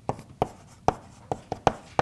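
Chalk writing on a blackboard: a run of about six sharp, irregularly spaced taps as letters are written.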